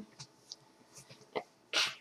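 A few faint ticks in a quiet pause, then near the end a short, sharp breathy burst from a person.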